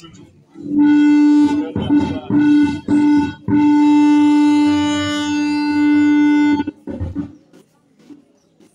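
A loud, steady-pitched buzzy tone: a few short notes, then one long note held for about three seconds, cutting off shortly before the preaching resumes.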